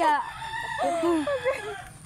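A rooster crowing once: one drawn-out call of about a second and a half.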